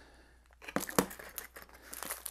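Clear plastic packaging crinkling as it is handled, with a few sharp clicks; the loudest comes about a second in.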